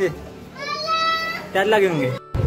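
Children playing: a child's high-pitched call held for about a second, then a short shout near the end.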